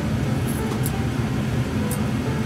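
Grooming scissors snipping dog hair, a few short sharp snips, over a steady low background rumble.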